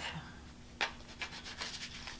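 A deck of tarot cards being shuffled by hand, cards sliding and rubbing against each other. There is a sharper snap of the cards about a second in, then a run of light quick clicks.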